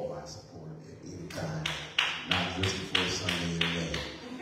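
Hand claps in a steady rhythm, about three a second, starting a little over a second in, with a voice going on underneath.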